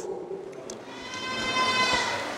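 A steady, high-pitched tone with many overtones swells in about halfway through and fades near the end.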